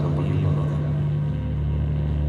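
A steady low electronic drone with a deep rumble beneath it, played over a concert PA as the intro tape before a band's set.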